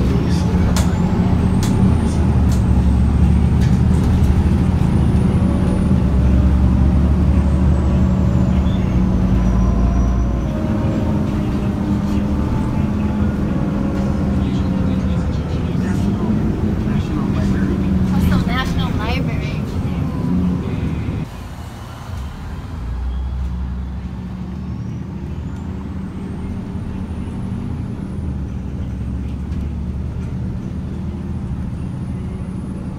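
A city bus driving along, heard from inside the cabin: the engine runs with a steady hum whose pitch shifts around the middle. About two-thirds of the way through the sound drops in level as the bus eases off.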